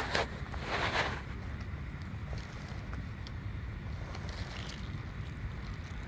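Low steady rumble of wind on the microphone, with a short hissing rustle just under a second in and a few faint clicks.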